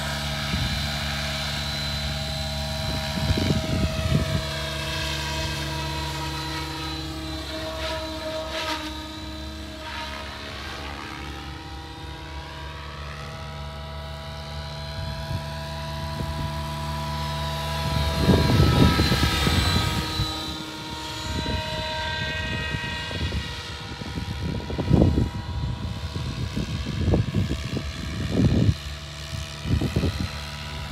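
Electric RC helicopter (Align T-Rex 700E) in flight: a steady whine of main rotor and motor, its pitch sweeping down and back up as it flies past. Bursts of low rumble come in a little after the start and again in the second half.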